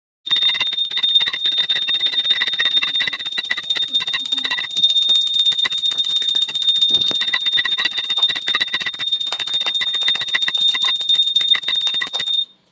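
A hand-held puja bell (ghanti) rung rapidly and without pause for an aarti, its clapper striking many times a second so that the high ringing tones never die away.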